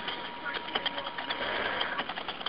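Scattered faint clicks over the hiss of a telephone line.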